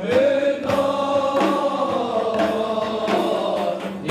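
A group of Sufi dervishes chanting a devotional hymn in unison, with long held notes, and frame drums beating under the voices.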